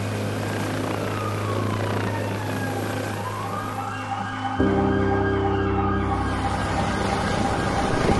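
Helicopter running with a steady low hum while a siren wails up and down; a little past halfway the hum cuts off abruptly and is replaced by a different steady engine drone.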